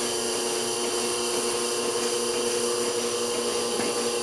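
Milking machine of a Westfalia Surge parlour system running with a steady hum while teat cups are on a cow, with a light knock near the end.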